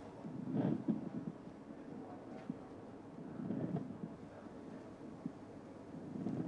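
Handheld fetal Doppler monitor giving only faint, very quiet whooshing static as the probe is moved over the belly, swelling softly about half a second in and again around the middle. No fetal heartbeat is being picked up.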